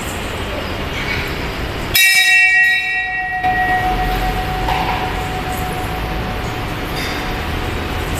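A metal temple bell struck once about two seconds in. Its bright ringing partials die away within a second or two, and a lower hum rings on for about five seconds.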